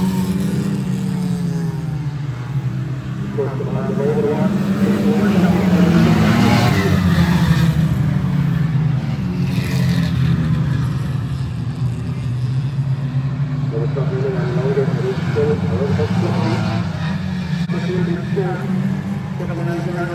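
A pack of Lightning Rods oval-racing saloon cars racing round the track, their engines running hard with a wavering pitch that rises and falls as the drivers work the throttle. The sound is loudest about six to eight seconds in.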